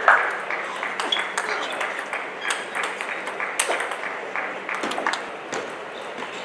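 Table tennis rally: the celluloid-type plastic ball clicks sharply off rubber-faced bats and the table top, one crisp tick every half second to a second.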